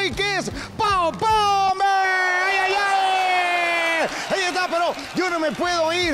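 A loud, drawn-out shout: a few short shouted syllables, then one voice held for about three seconds, its pitch sliding slowly down.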